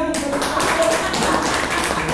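A small audience applauding: dense, irregular clapping that starts suddenly, with some voices mixed in.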